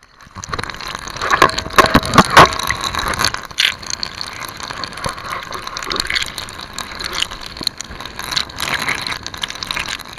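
Water splashing and sloshing around an action camera dunked underwater in its waterproof case, picked up from inside the housing. Scattered knocks and clatters run through it, heaviest about one and a half to two and a half seconds in.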